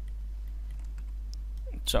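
Faint, scattered computer keyboard and mouse clicks over a steady low hum, with a spoken word starting near the end.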